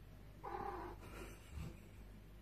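A faint recorded cat meow played through an Amazon Echo Dot smart speaker about half a second in, lasting about half a second, with a small low bump just after.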